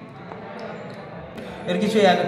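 Low room noise with one light knock about one and a half seconds in, then a man's voice starts speaking near the end.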